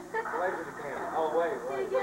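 Indistinct voices talking over one another, casual conversation with no clear words.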